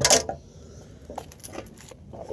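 Handling noise from a rifle and gear on a shooting bench: a sharp knock right at the start, then a few faint clicks and taps.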